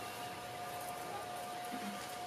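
Quiet room tone in a pause between speech: a faint steady hiss with a thin, steady high hum running under it.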